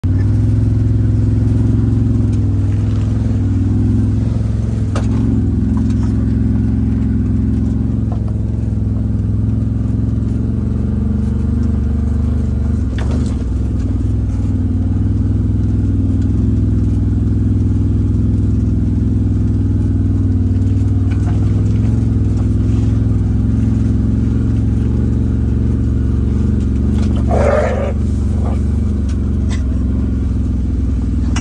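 Side-by-side utility vehicle's engine running steadily as it drives, a loud, even low drone, with a brief higher sound near the end.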